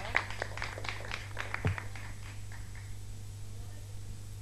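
A small group clapping briefly and unevenly, dying away after about two seconds, over a steady low electrical hum.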